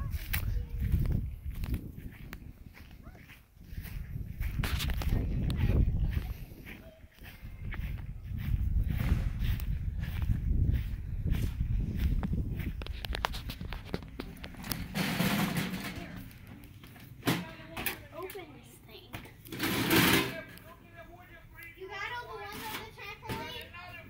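Indistinct voices of people talking outdoors, with a low rumble on the microphone through the first half.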